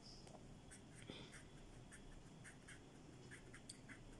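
Faint scratching of a pen drawing on a surface, a series of short irregular strokes over near silence.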